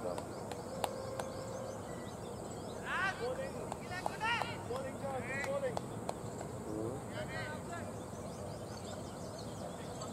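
Distant voices of players calling out in a few short shouts over a steady outdoor hiss, with one sharp click about a second in.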